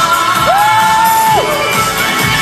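Loud pop music over a crowd. About half a second in, one voice lets out a long whoop that slides up, holds one pitch for close to a second, then drops off.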